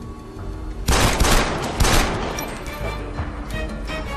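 A loud burst of gunfire about a second in, with a second volley shortly after, over dramatic background music.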